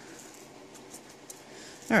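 Quiet room tone with a few faint ticks, then a voice saying "Alright" at the very end.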